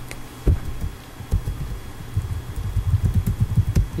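Typing on a computer keyboard, heard as a quick, irregular run of dull low thuds with faint clicks, after one louder thump about half a second in.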